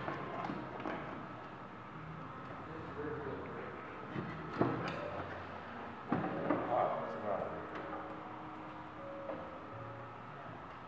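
A few sharp knocks and clicks as a person shifts about and reaches for the controls in an antique truck's open cab, over faint, indistinct voices; the engine is not running.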